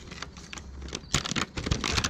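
A plastic dog-treat wrapper crinkling and crackling in the hands as a rapid string of small clicks, sparse at first and much denser from about a second in.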